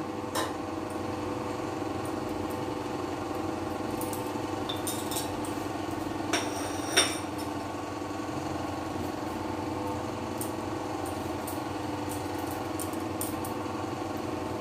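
A few light clinks of a metal spoon against a plate and a steel tiffin box as spices are spooned in, the loudest about seven seconds in, over a steady mechanical hum.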